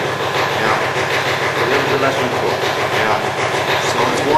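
Steady mechanical running noise from the vacuum coating chamber's pumps during the aluminizing run, with no breaks.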